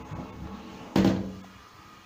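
A plastic toilet lid is lifted open and knocks back once, sharply, about a second in, with a short ringing after it.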